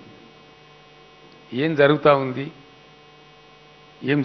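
Steady electrical mains hum on the handheld microphone's sound, with one short phrase of a man speaking into the microphone about a second and a half in.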